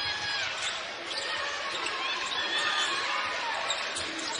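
A basketball dribbled on a hardwood court, with many short high sneaker squeaks and a steady murmur from the arena crowd.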